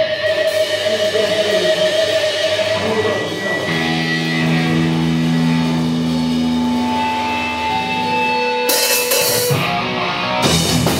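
Electric guitars and bass of a hardcore punk band holding long, ringing notes and a low chord with feedback as a song intro builds, then drums and the full band come in loud near the end.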